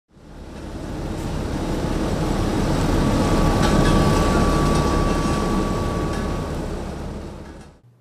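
Vögele asphalt paver running while it lays asphalt: a steady, deep machine noise with a faint thin whine through the middle and one short knock a little over three and a half seconds in. The sound fades in at the start and fades out near the end.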